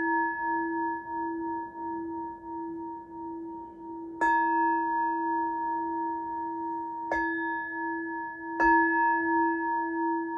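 A metal singing bowl struck with a wooden mallet three times, about four, seven and eight and a half seconds in. It rings on between strikes with a low pulsing hum and two higher tones above it, rung to clear or "change the energy".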